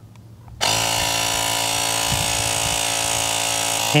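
Air Moto cordless tire pump's electric compressor switching on about half a second in and running steadily, with a high mechanical hum, as it inflates a motorcycle tire from nearly flat.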